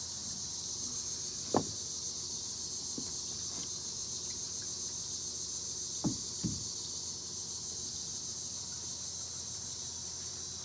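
A screwdriver tip digging and scraping at driftwood, with a few short sharp scrapes: one about one and a half seconds in, one at three seconds, and two close together just after six seconds. Under them runs a steady high-pitched insect chorus.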